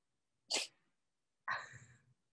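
Two short breathy sounds from a person: a quick, sharp puff of breath about half a second in, then a longer breathy gasp about a second later that fades away.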